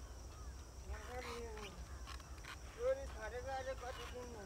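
A man's voice calling out twice over a steady low rumble: a drawn-out falling call about a second in, then a louder, wavering call near the end. These are the kind of calls a ploughman uses to drive a buffalo team.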